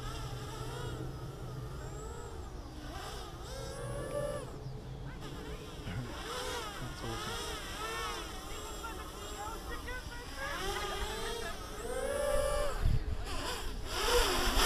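Quadcopter's motors and propellers whining in flight, the pitch swooping up and down again and again as the throttle is worked. It grows louder near the end as the quad comes closer.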